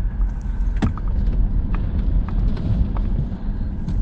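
Vehicle driving slowly on a dirt road, heard from inside the cabin: a steady low rumble of engine and tyres, with a few light clicks and knocks.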